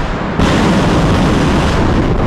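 Rocket motor of a ballistic missile at launch: a loud, dense rushing noise that steps up about half a second in and then holds steady.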